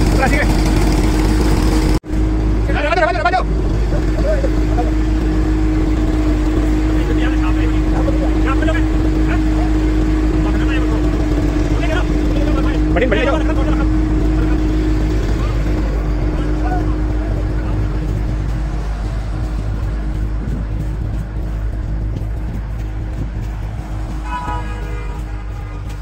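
Tractor engine running steadily, powering a groundnut thresher, with an unchanging hum. People call out now and then over it, and the machine noise eases slowly in the last several seconds.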